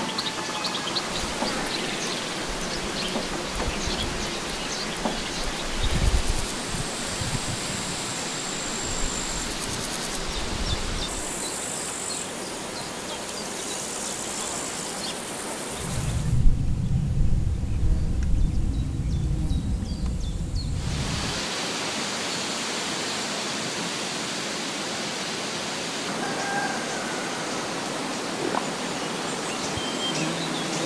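Outdoor ambience: a steady hiss with faint, scattered bird chirps. For about five seconds in the middle the hiss drops away and a low rumble takes over, then the hiss returns.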